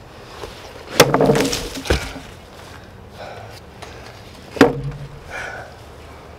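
A heavy handheld weapon striking and smashing a watermelon on a table: a loud splitting hit about a second in, a sharp knock just before two seconds, and another hit near the end.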